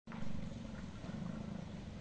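Steady low rumble of light street traffic: a small van's engine and motorbikes running.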